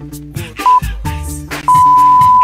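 Interval timer beeping over hip-hop music: one short beep about two-thirds of a second in, then a long, loud beep near the end. The beeps mark the switch to the next 30-second exercise.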